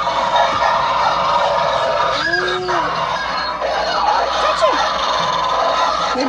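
Animatronic three-headed wolf Halloween prop playing its recorded animal growls and snarls through its speaker after being set off by its step pad.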